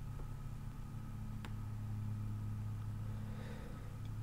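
A steady low background hum, with a single faint mouse click about a second and a half in.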